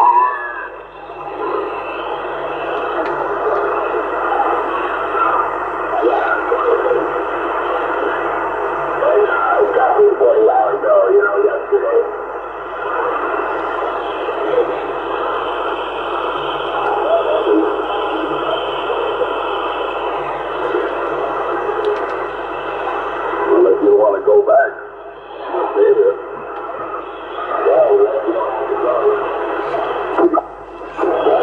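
Yaesu FT-450 transceiver receiving CB channel 26 in AM: weak, garbled voices from distant stations come and go under a steady hiss of band noise, heard through the radio's small speaker.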